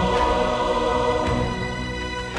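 Music: a choir and backing accompaniment holding a sustained chord at the end of a sung phrase, easing down after about a second and a half.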